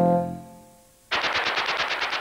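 A closing musical chord fading out, then about a second in a fast, even rattle of sharp hits, roughly a dozen a second, used as a transition sound effect between segments.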